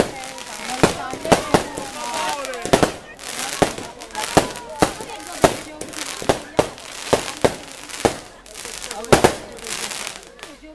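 Fireworks going off: a string of sharp bangs at irregular intervals, one or two a second, with a crowd talking and calling in between.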